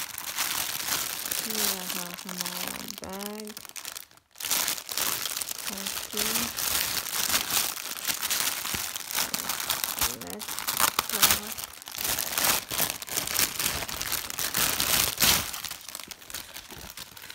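Plastic packaging, a clear film wrap and a polythene mailer bag, crinkling and crackling as it is handled and pulled about, with a short pause about four seconds in.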